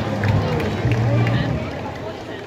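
Crowd voices mixed with soundtrack music with a low bass line, fading out near the end.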